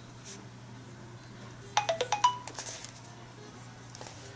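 A phone's alert tone: a quick run of about six short chiming notes a little under two seconds in, over a steady low hum.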